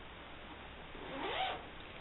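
Zipper on a padded guitar gig bag being pulled open: a short rasping zip about a second in, rising in pitch.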